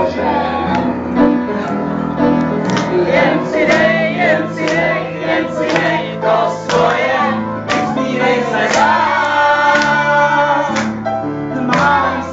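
Live band music with a singing voice carrying a wavering melody over steady bass notes and regular percussive hits.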